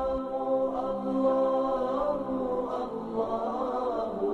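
Voices chanting in long held notes that shift slowly in pitch: a devotional Islamic vocal chant (nasheed).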